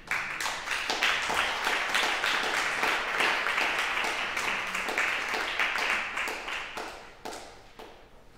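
Audience applauding, breaking out all at once and thinning out to a few claps near the end.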